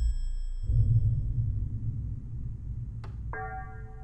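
Sound effect: a bell-like chime, then a deep low rumble that swells about half a second in and slowly fades, with a click and a second, lower chime near the end.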